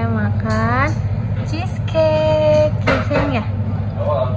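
Drawn-out vocal tones over a steady low hum: one voice gliding upward about half a second in, another held steady around two seconds in, then a few short broken vocal sounds.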